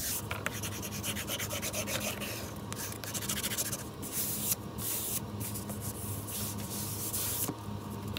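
Paper being rubbed flat onto chipboard by hand and a small flat tool: a run of uneven swishing, scraping strokes as the paper is burnished down.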